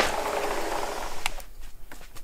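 Sliding glass patio door rolling open along its track: a rumbling slide of about a second and a half that ends in a couple of sharp clicks.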